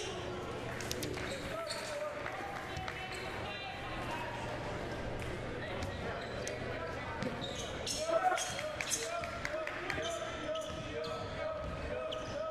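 Basketball game ambience in a gym: a basketball bouncing on the hardwood court, with voices of players and spectators echoing in the hall. The voices get louder about eight seconds in.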